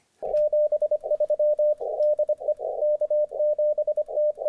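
Morse code (CW) heard on a ham radio receiver: a single tone of about 600 Hz keyed on and off in quick dots and dashes, with short patches of hiss confined to the same narrow band between characters.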